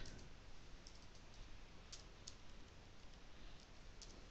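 Faint computer keyboard typing: a few scattered keystroke clicks over low room hiss.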